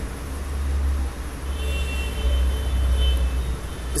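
Steady low rumble of background noise, with a faint high whine through the middle and a single sharp click at the very end.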